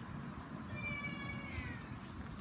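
A single drawn-out high-pitched call, about a second long, holding steady and then sliding down in pitch at its end, like a meow.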